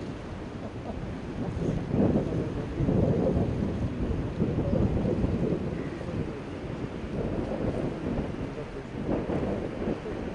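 Wind buffeting the microphone in gusts over the rush of a river in flood: a loud, low rumble that swells about two and three seconds in and again around five seconds.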